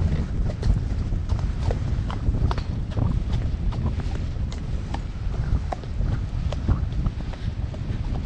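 A horse's hooves striking a wet gravel track in a run of sharp, uneven clip-clops. Wind rumbles on the microphone underneath.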